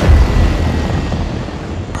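Sci-fi spacecraft flying in overhead: a sudden loud whoosh that settles into a deep, steady rumble with a faint high whine.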